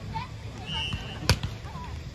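A volleyball struck hard by a player's hand once, a sharp slap about a second in, during a beach volleyball rally. Players' voices call faintly around it.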